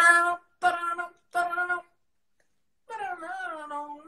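A young male voice singing wordless syllables into a microphone: three short notes on the same pitch, then, after about a second's pause, a longer wavering note that slides downward.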